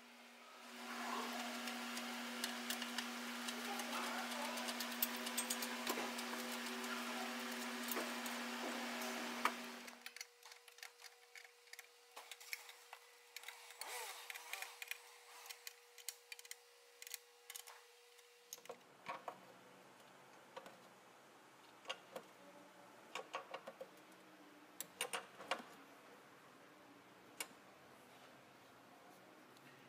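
Scattered clicks and knocks of metal parts and hand tools being handled in a car's engine bay while the battery tray and its bolts are fitted. There is a steady low hum under the first ten seconds or so, then a fainter, higher hum until about two-thirds of the way in, and after that only the clicks over a quiet background.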